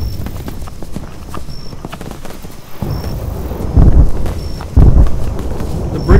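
Horse hooves clip-clopping in a run of hoofbeats on a battle soundtrack. Two heavy booms about a second apart come in the second half and are the loudest sounds.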